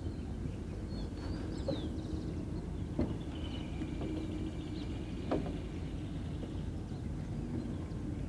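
Outdoor lakeside ambience: a steady low wind rumble with a few faint bird chirps and three short soft knocks.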